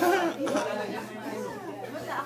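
Party chatter: several people talking over one another, with no single clear voice.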